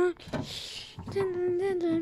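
A person's voice holds a long, fairly high sung note through the second half, with a slight waver in pitch. Before it, about half a second in, there is a brief knock and rustle.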